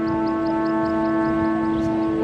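The flute kite's set of sáo whistles sounding in the wind: a steady chord of several held tones.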